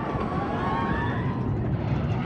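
RMC hybrid roller coaster train running along its track with a steady low rumble, with riders screaming as it goes.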